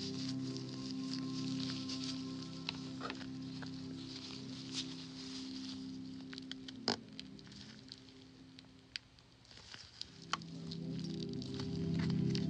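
Gloved hands handling a squishy pimple-popper toy: a scatter of small crackles and clicks from the gloves and toy, with one sharp click about seven seconds in. Soft background music runs underneath, dropping away after about eight seconds and coming back near the end.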